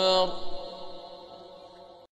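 A man's melodic Quran recitation (tajwid chanting) ends on a long held note about a quarter second in. Its reverberation then fades away over the next second and a half.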